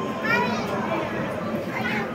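Children's voices amid background chatter, with a high-pitched call about half a second in and another near the end.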